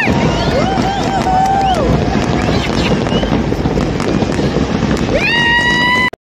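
Fireworks display: a dense, continuous barrage of bangs and crackles, with a crowd cheering over it and a long high whoop rising and holding near the end.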